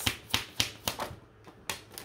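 A deck of tarot cards being shuffled and handled: a quick run of card clicks and snaps that thins out after about a second, with a couple more near the end.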